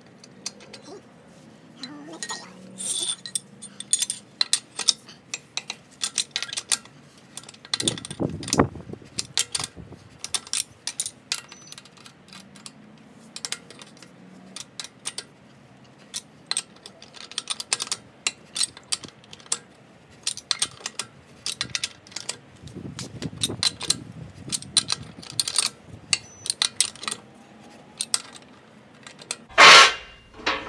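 Irregular metallic clicks and clinks of a hand wrench working the lug nuts onto a car wheel's studs. Two duller, lower thumping stretches come about a quarter of the way in and again about three-quarters through.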